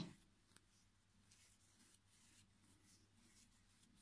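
Near silence, with faint soft rustles of yarn being worked with a steel crochet hook.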